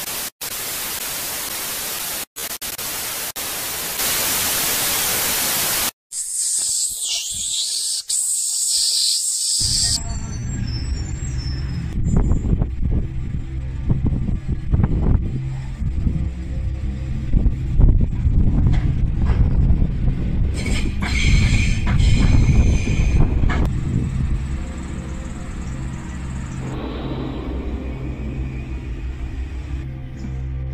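Loud hiss of TV static for about six seconds, cut by two brief dropouts, then a glitchy transition and music with a deep, shifting bass line.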